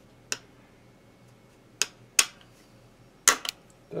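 Plastic tremolo-cavity cover plate on the back of an electric guitar being worked loose and lifted off by hand, giving a few sharp clicks and snaps, the last two close together near the end.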